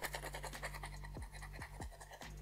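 Faint scraping of a thin flat blade across the underside of a sneaker insole, a few quick strokes scratching off caked dirt and debris.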